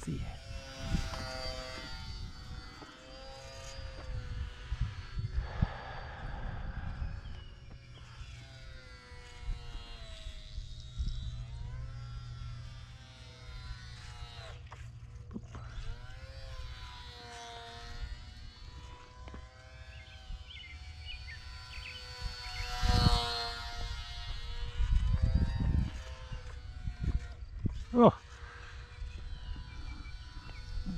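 Small electric RC plane's geared motor and propeller whining in flight, the pitch rising and falling slowly as the throttle changes and the plane passes. Wind buffets the microphone, with louder gusts in the second half.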